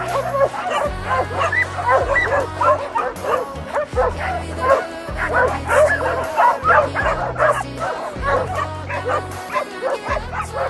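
A pack of dogs barking, yipping and whining excitedly all at once in a dense, overlapping chorus, over background music with a steady bass line.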